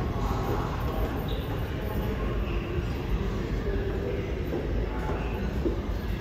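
New York City Subway train running on the local track in an underground station: a steady low rumble.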